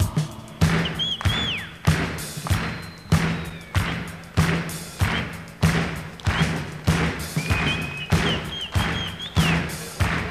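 Live rock concert break: a steady drum beat, about three strokes every two seconds, with the audience clapping along on each beat. A few shrill whistles come from the crowd, once about a second in and again near the end.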